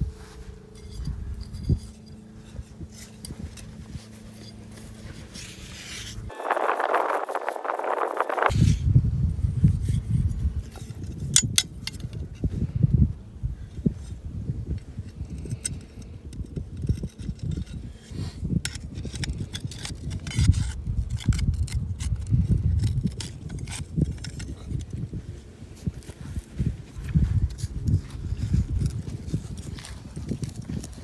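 Sand being dug out of a trench by hand and with a small spade, irregular scrapes, scoops and soft thuds.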